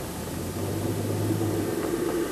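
A car engine running steadily with a low hum, the sound growing gradually louder.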